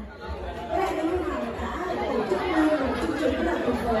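Chatter of many voices in a large hall, with a woman's voice amplified through a handheld microphone over it.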